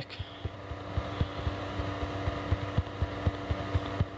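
A steady low mechanical hum with a faint held tone, broken by scattered faint low knocks.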